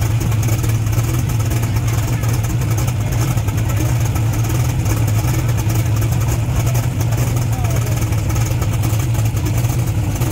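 Drag-race car engines idling steadily side by side, the turbocharged car's engine closest and loudest, with no revving.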